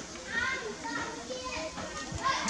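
High-pitched voices calling, with rising and falling pitch, starting about a third of a second in.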